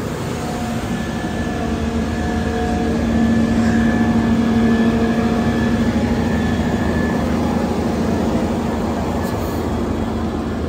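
Fire truck's diesel engine running steadily with a low hum, louder about three to six seconds in as the truck is passed close by.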